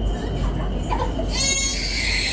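Steady low rumble of a BTS Skytrain carriage running between stations, with passengers' voices in the background. A brief high-pitched squeal cuts in about a second and a half in.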